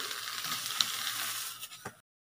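Steady crackling sizzle from a hot, oiled flat iron griddle as banana leaves are laid on it, with one sharp click just under a second in. The sizzle fades near the end.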